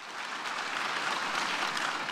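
Crowd applauding, swelling in over the first half second and then holding steady.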